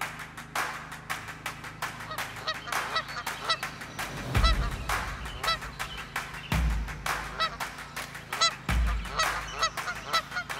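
A flock of geese honking, many short calls overlapping and repeating throughout, with three low thumps about two seconds apart.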